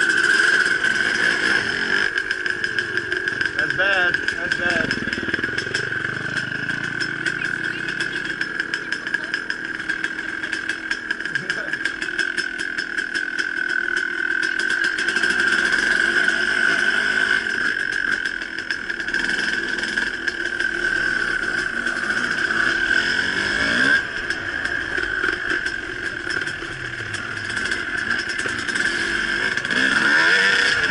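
Suzuki RM250 two-stroke dirt bike engine running at low revs while ridden slowly, heard from the rider's helmet camera, with a couple of brief rises in revs.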